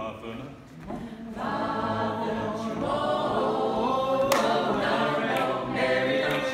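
Mixed-voice a cappella group singing a gospel spiritual with no instruments, holding long sustained chords that swell louder about a second and a half in.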